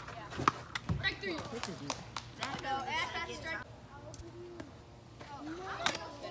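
Children's voices talking and calling out in the background, with a few scattered sharp clicks and taps; one sharp click comes just before the end.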